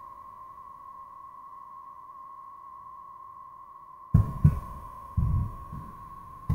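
A steady, high-pitched electronic whine with a fainter higher tone, running under the recording. From about four seconds in come three short, low, muffled bumps.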